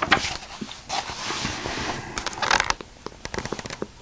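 Paper pages of a textbook being turned by hand: rustling and crackling, loudest at the start and again about two and a half seconds in, with lighter crackles near the end.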